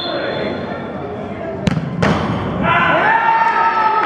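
An indoor soccer penalty kick: a sharp thud of the ball being struck, then a second impact about a third of a second later as the ball reaches the goal end. Voices of people in the hall rise soon after.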